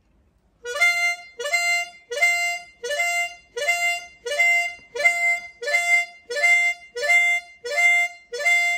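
Diatonic blues harmonica in C playing a repeated draw glissando: each note slides quickly up across several holes and stops on the single note of channel 5 draw, F. About eleven of these slides follow in an even rhythm, a little more than one a second, starting just under a second in.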